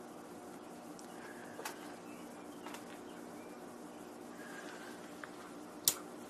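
A low steady hum with a few faint ticks, then one sharp click near the end.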